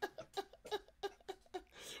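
A man laughing quietly: a quick run of short breathy 'ha' pulses, about four or five a second.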